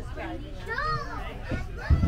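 A child's voice rising and falling, with other passengers chattering, over the low rumble of the moving tram; a short thump near the end.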